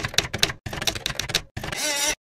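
Typewriter sound effect: rapid key strikes, about eight to ten a second, in runs broken by short pauses about half a second in and again near the end, followed by a denser sound with a wavering pitch.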